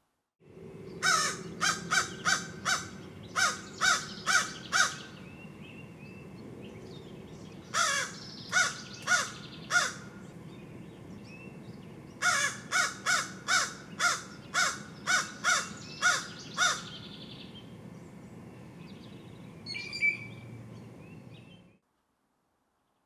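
Crow cawing in three bouts of quick, repeated caws, about two to three a second, over a steady background hiss. A single short, different call comes near the end.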